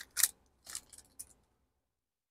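Foil trading-card pack wrapper crinkling in several short bursts as the cards are slid out of it.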